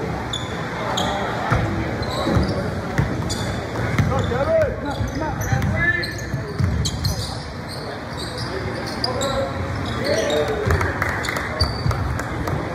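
Basketball game on a hardwood gym floor: the ball bouncing as it is dribbled, sneakers squeaking in short chirps, and players and spectators calling out across the hall.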